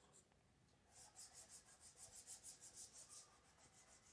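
Faint rapid rubbing on a whiteboard, about five strokes a second, as marker drawings are wiped off by hand.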